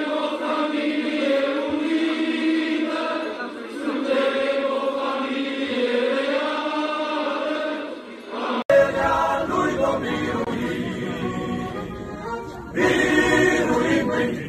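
A choir singing a hymn in sustained chords. About nine seconds in there is an abrupt cut to another choral passage that sounds fuller and sings in shorter phrases.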